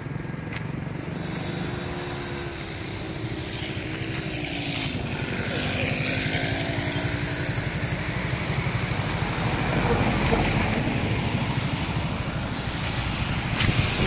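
Motor vehicle engines running close by, a low steady drone. One engine's pitch falls as it slows about two to five seconds in, and the noise grows louder toward the end.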